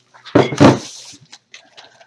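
Things being handled close to the microphone: a loud bump with a rustle about half a second in, then a few light clicks and taps as items are moved and set down.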